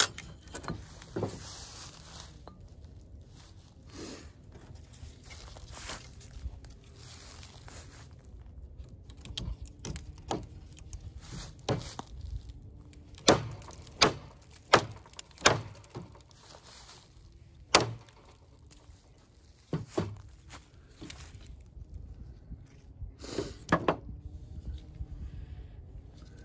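Dry pine knot being bashed against a tree stump to break it open: a series of sharp wooden knocks, the loudest cluster about halfway through, with rustling and handling of bark and wood in between.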